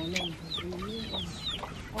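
Chickens clucking in a low, wavering run, with about five short high falling calls over it.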